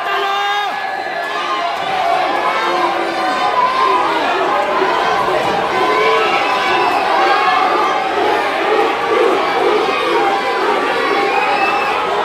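Live wrestling crowd shouting and cheering, many voices overlapping at a steady level.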